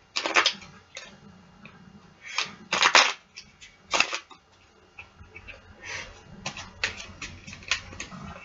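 A deck of playing cards shuffled by hand, in irregular short strokes. The loudest come about three and four seconds in, and a quicker run of strokes comes near the end.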